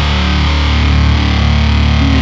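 Powerviolence band's heavily distorted electric guitar and bass holding one loud, steady chord.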